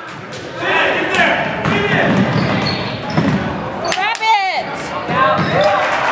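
Basketball bouncing on a hardwood gym floor during play, with voices and shouts from the crowd and bench echoing in the large hall.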